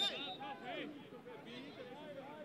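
Faint, overlapping shouts and talk of football players on the pitch, picked up by the field microphone.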